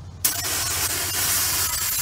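Canister of bear spray discharging in a three-second burst: a loud, steady hiss that starts suddenly about a quarter second in.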